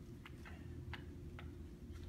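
Light footsteps on a stage floor: a few faint clicks roughly every half second, over a steady low hum.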